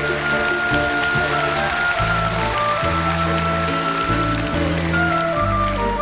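Audience applause over the band's instrumental music. The band holds long notes over a steady bass, and the clapping fades out near the end.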